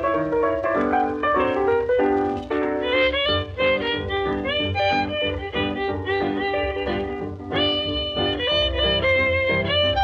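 Old honky tonk string-band record playing an instrumental passage, with fiddle leading over piano and rhythm and no singing. About three-quarters of the way through the sound briefly dips, then a bright fiddle line carries on.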